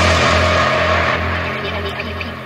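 Electronic dance music in a breakdown: the beat has dropped out, leaving a sustained synth drone over a pulsing deep bass, slowly getting quieter.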